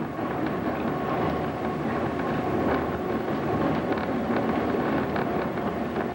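Bavarian Zugspitze rack-railway train running downhill, heard from inside the carriage as a steady rumble and rattle with a faint whine.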